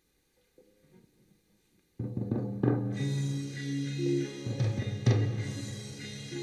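After a near-silent pause, a song intro starts suddenly about two seconds in: drums and steady bass notes, with an acoustic-electric guitar played along.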